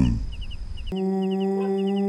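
Insect chirps in quick groups of three repeat steadily. About a second in, a loud steady droning chord of many held notes cuts in abruptly.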